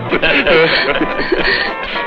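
Several voices talking and laughing over background music on an old film soundtrack.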